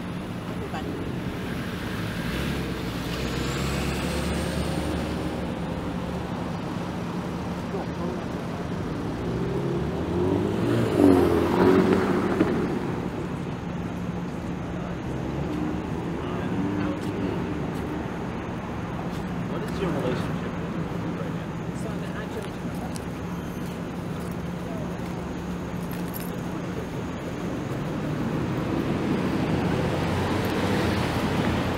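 Downtown street traffic at an intersection: cars idling and passing in a continuous low rumble. The traffic swells louder about eleven seconds in.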